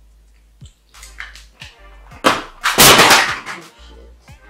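Loud rustling and scraping handling noise, a little over two seconds in, lasting about a second, over soft background music.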